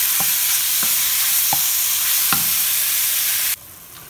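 Diced chicken thighs frying in hot bacon grease in a cast iron pot, sizzling steadily, with a few light knocks of a wooden spatula stirring them. The sizzle cuts off suddenly about three and a half seconds in.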